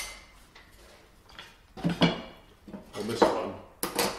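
Cast-iron bench plane parts knocking and clinking as the frog is handled and set into the plane body. Several sharp metallic clinks, some ringing briefly, with a louder cluster near the end.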